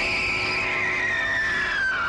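A woman's long, high-pitched scream, slowly sagging in pitch and then sliding steeply down as it trails off at the end.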